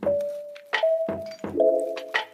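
Music: a slow line of single notes, each starting with a sharp attack and ringing on for a moment, about four notes in two seconds.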